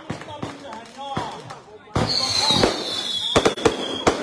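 Coloured-smoke fireworks going off: scattered crackling pops, then about halfway a sudden loud rushing whoosh with a high whistle sliding slightly down as a smoke rocket goes up, and a few sharp bangs near the end.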